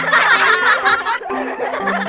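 Laughter over light background music with a repeating melody; the laughter is loudest in the first second and fades after.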